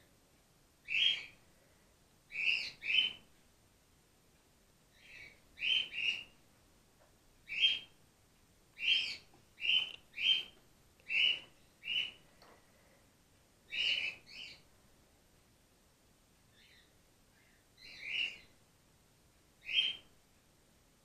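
Grey-headed flying-fox giving short, high-pitched chirping squeaks, singly and in quick pairs, at irregular intervals roughly a second apart.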